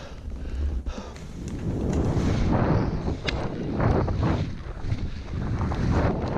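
Skis sliding and turning through snow, with wind buffeting the microphone of a helmet-mounted action camera. The rough scraping grows louder about a second in and then swells and fades with each turn.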